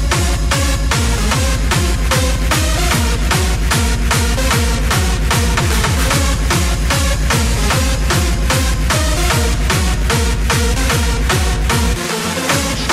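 Techno/progressive electronic dance music from a club DJ mix: a steady four-on-the-floor kick drum and bassline drop back in right at the start after a breakdown, under evenly ticking hi-hats and a repeating synth riff. The kick drops out again at the very end.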